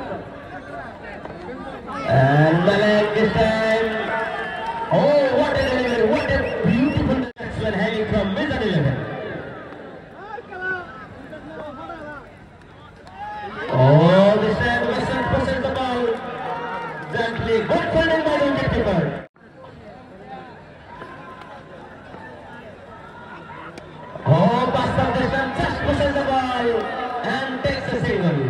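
Mostly speech: a man's voice calling out in three loud stretches, about two seconds in, around fourteen seconds in and near the end, over the murmur of a crowd.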